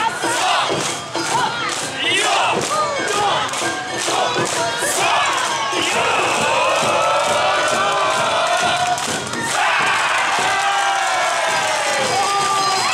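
A troupe of Awa Odori dancers shouting rhythmic kakegoe calls together, many voices at once. In the second half come two long, drawn-out group calls, the second starting about two thirds of the way in.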